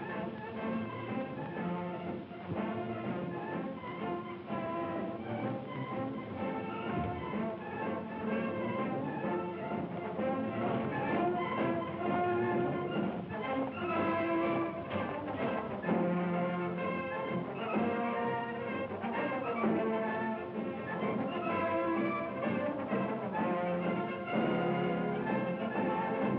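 Orchestral film score with strings carrying a melody of held notes, growing somewhat louder in the second half.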